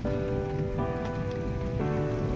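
Steady rain falling, heard as an even hiss. Background music of held chords lies over it, the chord changing about once a second.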